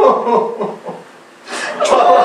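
Several voices sobbing in an exaggerated, comic way, mixed with chuckling laughter. A short hissy burst comes about one and a half seconds in, and then the sobbing grows louder.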